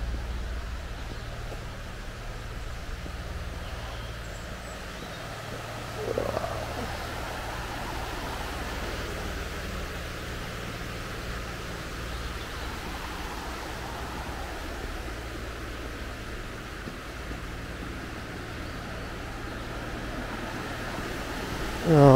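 Steady rush of a shallow, rocky river running over stones, with a low steady hum underneath. A short rising sound stands out about six seconds in.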